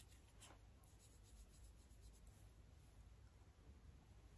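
Near silence, with faint rubbing as a fingertip works shimmer-bronzer powder from its compact and swatches it onto skin.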